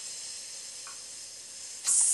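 A woman's forced exhale hissed through the teeth: a soft steady "shh" that turns into a much louder hiss near the end. This is the engaged exhale of breath-work, draining the air from the lungs.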